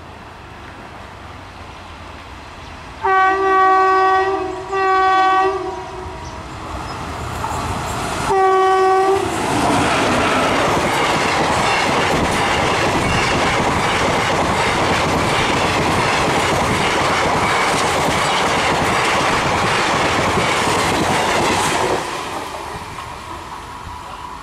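WAP-5 electric locomotive's air horn sounding three blasts, two close together and a third a few seconds later, as it approaches. The express then passes at speed, wheels clattering over the rail joints in a loud, steady rush for about twelve seconds, which drops away sharply near the end as the last coach goes by.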